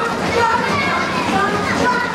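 A big crowd of young children chattering and calling out all at once, a steady jumble of many small voices.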